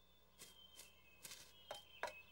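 Faint, light cartoon footstep sound effects: about four or five soft little steps, evenly spaced, as a small character walks.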